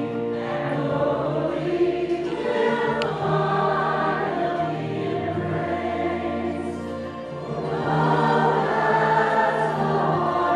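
Mixed church choir, men's and women's voices, singing a Christmas cantata in held harmony, swelling louder about eight seconds in.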